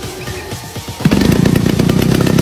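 Background music, with the engine of a large-scale RC biplane running and getting much louder about a second in as it is throttled up.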